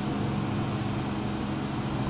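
Steady room background noise: an even hiss with a faint low hum, unchanging throughout.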